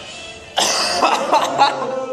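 A burst of stifled, held-back laughter, starting suddenly about half a second in, breathy and broken up like coughing.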